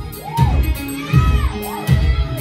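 Live gospel band playing a steady, bass-heavy beat, a low hit about every three-quarters of a second, while voices in the congregation shout and cheer over it with rising-and-falling cries.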